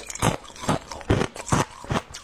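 A mouthful of hard frozen ice chewed close to the microphone, crunching in a steady rhythm, about five crunches in two seconds.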